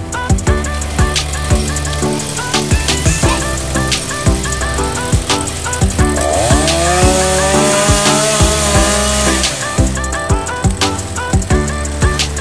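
Background music with a steady beat. About halfway through, a two-stroke chainsaw engine joins it for roughly three seconds, rising in pitch and then holding at high speed.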